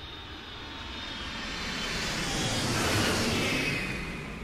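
Jet airliner flyby sound effect: a rushing engine noise that swells to its loudest about three seconds in and then fades, with a falling whine as it passes.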